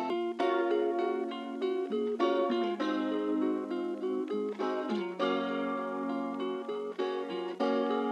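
Trap-style instrumental beat stripped down to a plucked guitar melody, with the 808 bass and drums dropped out.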